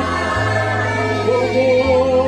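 Choir singing gospel music over sustained low bass notes, which change to a new pitch about every one and a half seconds.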